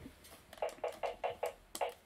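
A run of about seven light clicks, three or four a second, as buttons or keys are pressed on music gear.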